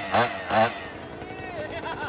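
A man talks briefly at the start, then a quieter stretch of faint background voices and outdoor noise.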